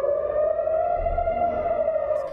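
Air-raid warning siren wailing on one tone that rises slightly, then falls away near the end: a warning of incoming rocket fire.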